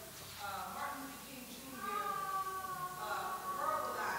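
A person's voice speaking off-microphone, quieter than the on-stage speakers, with long drawn-out vowels.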